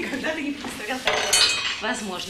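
Dishes and cutlery clinking, with a few sharp clinks about a second in, under indistinct conversation.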